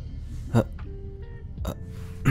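A man's voice making two short, hesitant 'uh' sounds, about half a second and a second and a half in, over quiet lo-fi background music.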